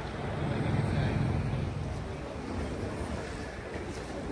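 Steady low rumble of city traffic, cars and tyres passing on the roadway, swelling slightly about a second in.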